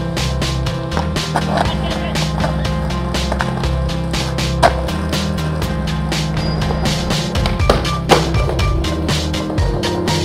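Skateboard wheels rolling on smooth stone with sharp board impacts, one about halfway through and one about eight seconds in, over background music with a steady beat.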